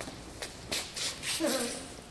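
Footsteps and shuffling on a hard floor, with a few light clicks and a brief spoken sound about a second and a half in.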